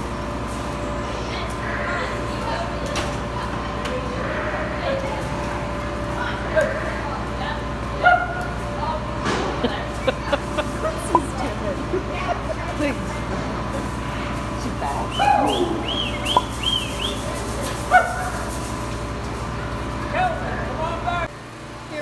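A flock of sheep milling in a barn pen, with several bleats, a cluster of them about two-thirds of the way through, and scattered knocks. Under it runs a steady low hum of the barn's ventilation fans, which drops away near the end.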